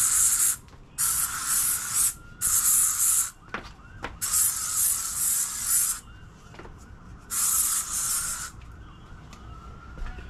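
Aerosol can of insect repellent sprayed in five hissing bursts of about half a second to two seconds each, with short pauses between them.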